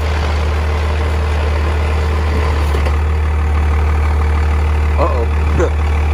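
Dodge Ram pickup's engine idling with a steady, deep rumble.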